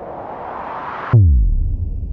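Logo intro sound effect: a rising whoosh that swells and cuts off sharply about a second in, giving way to a loud, deep bass hit that slides down in pitch and rumbles on, slowly fading.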